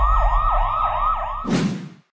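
Emergency-vehicle siren sound effect in a fast yelp, its pitch sweeping up and down about three times a second over a low rumble. A whoosh about one and a half seconds in cuts it off.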